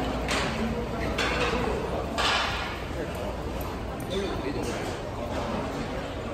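Busy food court ambience: many people talking in the background, with short clattering sounds and a brief high ping about four seconds in, in a large echoing hall.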